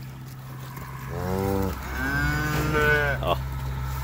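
Beef cow mooing twice to call her newborn calf, a short moo and then a longer one. It is the anxious calling of a nervous mother who senses her calf is threatened.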